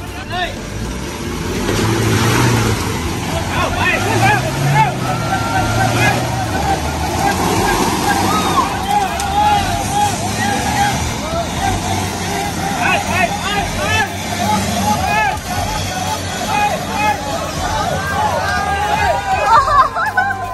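Toyota Hilux pickup's engine revving as it churns through deep mud and pulls forward, with swells of engine sound about two and five seconds in. People's voices are heard over it.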